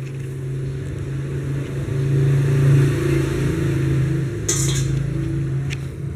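Golden Labrador-mix dog making a low, continuous rumbling growl while being hugged and petted, a playful grumble that breaks briefly for breath and swells about halfway through. A short hiss comes near the end.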